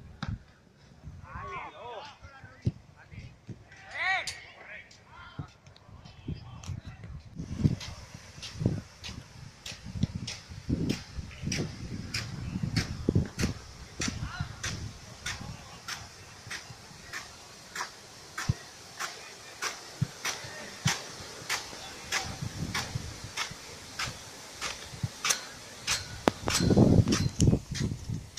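Irrigation impact sprinkler running, its arm ticking steadily about twice a second over the hiss of the water jet, the ticking and hiss coming in several seconds in. Brief voice sounds near the start.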